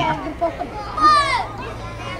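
Children's voices from a watching crowd, with one high child's call about a second in, over a low murmur.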